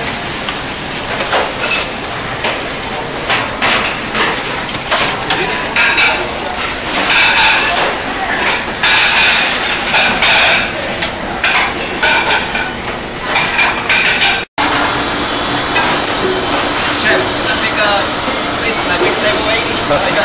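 Busy restaurant kitchen at work: food sizzling on the line amid the clatter of pans, plates and utensils, with indistinct voices in the background. The sound breaks off for an instant about fourteen seconds in.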